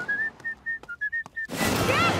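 A person whistling a tune in short, evenly spaced notes, with light footsteps between them. About one and a half seconds in, a sudden loud burst of noise cuts the tune off.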